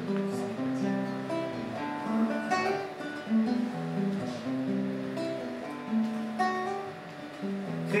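A nylon-string classical guitar is strummed in an instrumental passage without singing, with a chord struck about once a second and left to ring.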